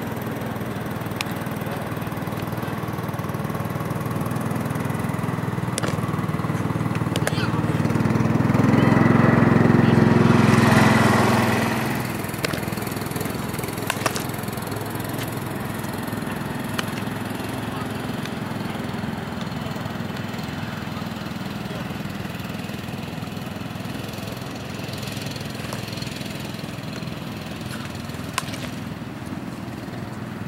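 A motor engine drones steadily, growing louder to a peak about a third of the way through and then dropping back, like a machine passing close by. A few sharp pops of a baseball striking a leather glove sound over it.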